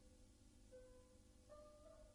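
Very faint background music: a few held instrumental notes, with a new note entering about a second in and another near the end.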